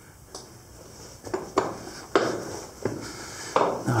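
Footsteps on a rocky cave floor: about six sharp knocks and scrapes, unevenly spaced roughly half a second to a second apart, each with a short echo.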